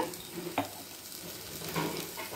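Chopped onion, green chilli and peanuts sizzling in hot oil in a kadai, stirred with a spoon, with a single sharp tap about half a second in.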